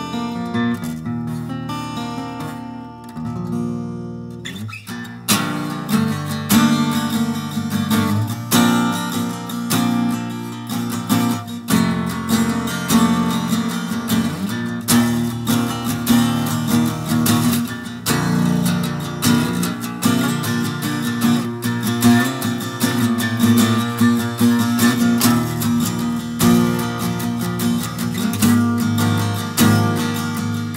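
Ibanez acoustic guitar being played: a few seconds of softer picked notes, then steady strummed chords from about five seconds in. It has a freshly set saddle height and old, worn strings.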